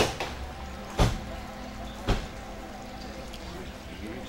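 Handling sounds as a spoonful of diatomaceous earth powder is scooped from a paper pouch and tipped into a plastic hand pressure sprayer: two sharp knocks about a second apart, then faint rustling.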